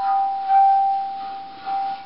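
Water-filled brass spouting bowl (water gong) sung by wet hands rubbing its handles: a steady ringing tone with a fainter higher overtone, swelling about half a second in and again near the end.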